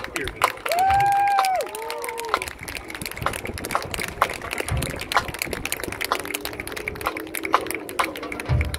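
Stadium crowd sounds: one voice shouts a long call about a second in, followed by a shorter one, over scattered sharp claps and quieter chatter.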